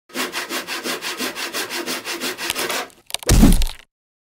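Hand saw cutting wood in quick, even strokes, about five a second. It stops, and there are a couple of sharp cracks and then a loud, deep thud.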